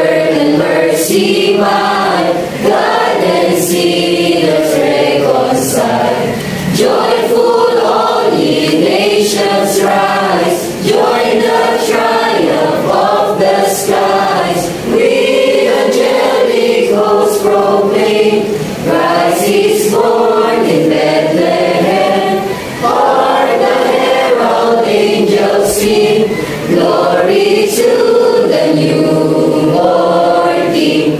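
A mixed choir of young men and women singing together, in phrases of about four seconds each with short breaths between them.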